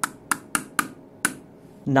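Five sharp taps of a wooden mallet on the bolt head of a metal disc, each with a brief metallic ring. The disc is being knocked true to take the wobble out of it on its shaft.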